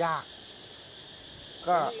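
Steady chorus of crickets chirping in the background, a continuous high-pitched buzz between short bits of speech.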